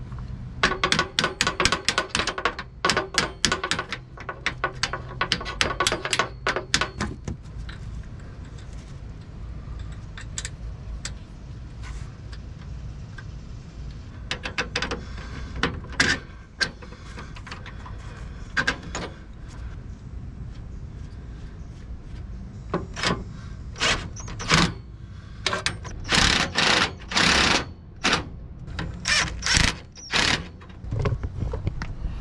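Bolts being tightened on an RV slide-out's replacement gear pack: rapid mechanical clicking for the first several seconds, scattered clicks and metal taps in the middle, then several short bursts from a cordless impact driver near the end.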